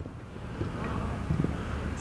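Wind rumbling on the microphone over the open-air ambience of a floodlit artificial-turf football pitch, with faint voices of players about a second and a half in.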